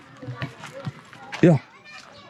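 A man's single short exclamation about one and a half seconds in, over faint outdoor background noise.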